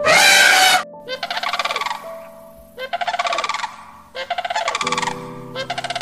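An elephant trumpets once, briefly and loudly, at the start over background music. It is followed by four shorter, rapidly pulsing animal calls, evenly spaced.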